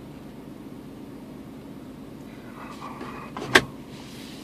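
Steady low hum of a stationary car's idling engine heard inside the cabin. Near the end, a brief faint sound and then a single sharp click.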